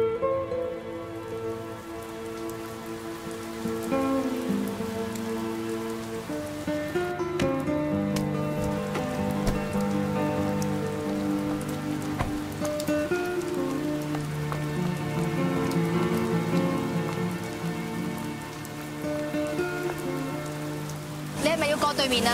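Steady rain falling, under a soft background score of slow, held notes that change every few seconds.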